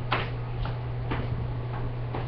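Regular ticking, about two ticks a second, alternating louder and softer like a clock's tick-tock, over a steady low hum.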